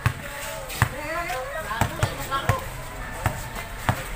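Basketball bouncing on a concrete court, several sharp bounces at uneven intervals during play, with voices calling out between them.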